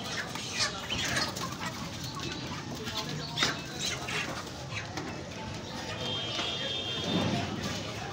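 Live chickens in a wire cage clucking in short, scattered calls over background voices.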